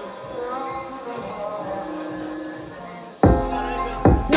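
Hip-hop backing track played by a DJ over the venue's sound system. A soft melodic intro runs first, then the full beat with heavy bass and drums drops in suddenly just past three seconds in.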